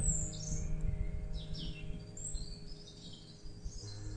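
Small birds chirping and calling in woodland, with short high chirps scattered through, over soft steady sustained background tones.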